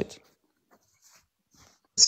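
A man's spoken word trails off in the first moment, then a pause of near silence with a few faint, brief soft noises.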